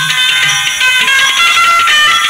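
Music played through a pair of NEXT GEEK 4-inch cone tweeters on test: a thin, treble-heavy sound with almost no bass.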